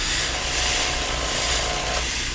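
Airbrush spraying paint at low pressure: a steady hiss of air with a low hum underneath.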